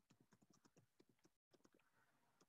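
Near silence with faint, rapid, irregular clicking of typing on a computer keyboard. The audio cuts out completely for a moment near the end.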